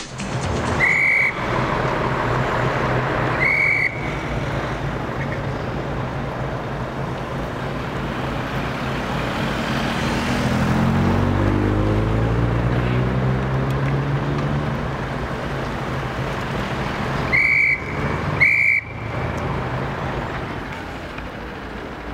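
Vehicle engines running at a street intersection, with one engine rising in pitch as it accelerates about ten seconds in and then running steadily for a few seconds. Short high beeps sound twice near the start and twice more late on.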